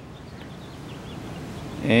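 Faint, steady outdoor background noise, an even hiss with no distinct event, with a man's voice starting again right at the end.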